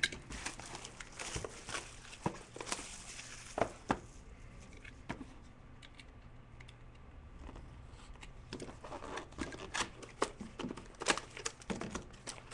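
Plastic wrapping being torn and crinkled as a sealed box of trading cards is opened: a run of sharp crackles that eases off in the middle and picks up again near the end.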